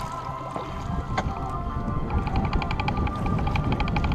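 Wind buffeting the microphone over choppy lake water slapping against a small boat, under background music that picks up a fast, regular run of repeated notes about halfway through.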